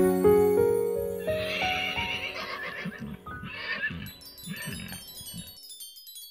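Cartoon soundtrack: the last notes of a children's song die away. Then come three fading, noisy cries over soft rapid thumps, and a shimmer of high twinkling chime notes as it fades out.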